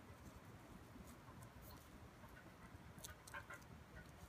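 Near silence, with a few faint rustles and clicks of faux leather being rolled tightly between the fingers.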